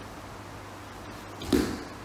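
A single sudden swish with a soft thud about one and a half seconds in, from the bodies and hakama of two aikido practitioners as one throws the other toward the mat.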